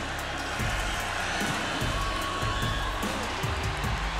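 Background music over stadium crowd noise, with the home crowd cheering a game-tying field goal.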